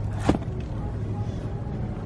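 A single sharp tap about a quarter second in as plastic-wrapped pads of paper are handled on a store shelf, over a steady low hum of store background noise.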